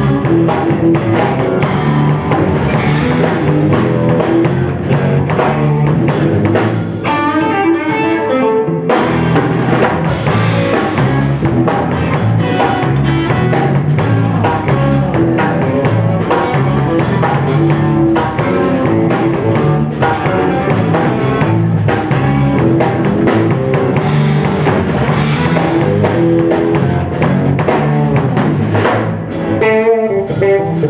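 Live instrumental band: electric guitar, electric bass and drum kit playing together. About seven seconds in, the drums and low end drop out for roughly two seconds, leaving only guitar notes, then the full band comes back in.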